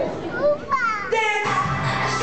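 Excited children's voices and crowd chatter in a large hall, then recorded dance music with a steady bass line starts playing about a second in.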